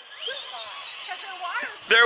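Electric motor of a Traxxas Rustler RC truck whining and revving up as it drives over grass, still running normally after being pulled out of a lake. A man's voice comes in just at the end.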